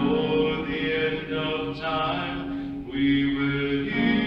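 Men's chorus singing sustained chords in close harmony, moving to a new chord about once a second.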